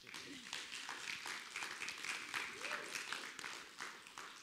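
A small congregation applauding: a scattering of hand claps from a sparse group of people.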